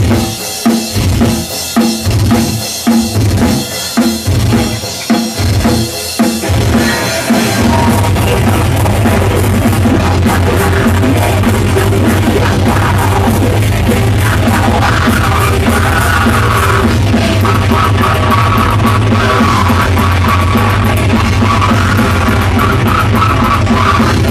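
Live heavy metal band playing. The song opens with drums and band hitting together in stop-start accents, about two a second. About seven seconds in, the full band kicks in with guitars and pounding drums running continuously.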